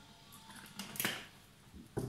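Faint handling sounds of plastic kitchenware: a couple of light clicks, one about halfway through and a sharper one at the end.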